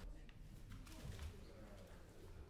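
Quiet room tone of a hall with a seated audience: a faint low rumble with soft scattered rustles and a few low thumps.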